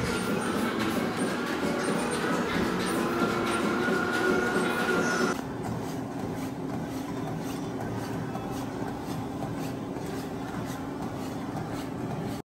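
Treadmill running at walking speed: a steady motor whine and belt hum under the regular thud of footsteps on the belt. The sound turns quieter a little over five seconds in.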